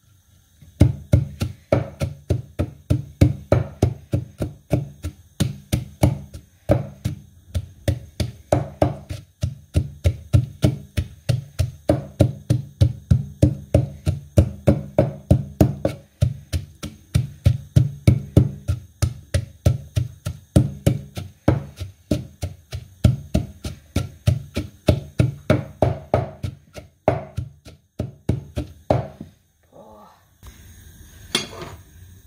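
Wooden pestle pounding chillies and garlic in a wooden mortar: a steady run of dull thuds, about three a second, with a few short pauses.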